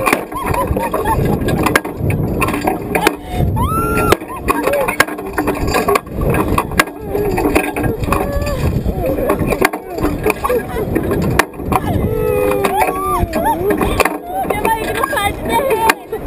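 A woman and a man laughing loudly on a swinging slingshot ride, with wind rushing and buffeting over the capsule-mounted camera's microphone.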